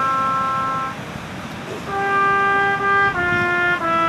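Solo trumpet playing a slow melody in long held notes. It plays one note, stops for about a second, then comes back with a held note that moves on to two more.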